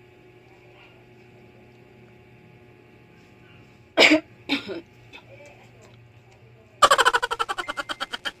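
Two short coughs close together about halfway through, then near the end a fast rattling vocal burst of about a second and a half.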